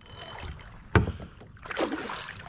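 A hooked snook thrashing at the surface beside a kayak: a single sharp knock about halfway through, then a splash near the end.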